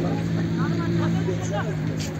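A steady, low engine hum, like a motor vehicle idling nearby, with faint distant voices calling across the pitch.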